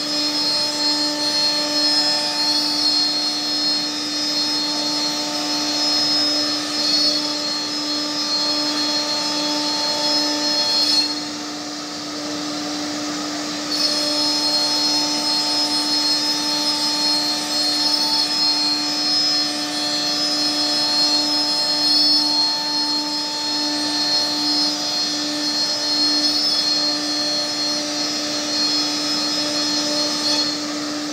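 Holztek CNC nesting router running as it cuts a panel, a steady machine whine with a strong low hum under it. About eleven seconds in, the higher-pitched part of the sound drops out and the level falls for about three seconds, then it resumes.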